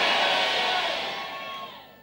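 Large church congregation shouting and cheering in response to the preacher, a dense crowd noise that fades away steadily over about two seconds.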